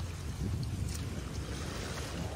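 Wind buffeting the microphone over the wash of shallow sea waves at the shore, with a light click a little under a second in.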